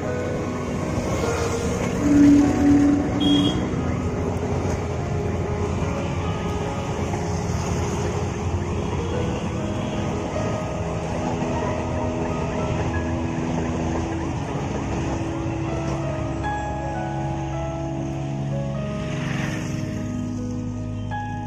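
A passenger train running past with a steady low rumble, under background music; three short loud tones sound about two to three seconds in.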